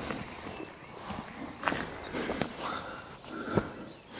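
A hiker crawling under an obstacle on the forest floor: irregular scuffing steps with rustling and scraping of clothing and backpack, a string of short crackles and scrapes.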